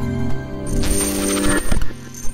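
Logo-intro music with electronic glitch sound effects: sustained synth tones under scattered clicks, and a hissing swell about a second in with a thin high tone over it.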